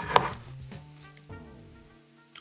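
A single sharp knock on the kitchen counter about a quarter second in, as a utensil or the blender jar is set down. It is followed by quieter background music of held notes with a falling line near the end.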